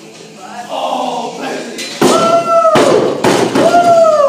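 A loaded barbell with bumper plates is dropped from overhead onto wooden lifting blocks. It hits with a heavy thud about two seconds in and knocks a couple more times as it settles. A voice calls out twice in falling tones over background music.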